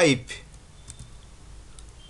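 A few light computer keyboard key clicks, the Ctrl+E / F5 shortcut being pressed to switch the isoplane.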